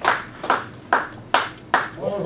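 Hand claps in a room, slowing to single claps a little over two a second as the applause dies away.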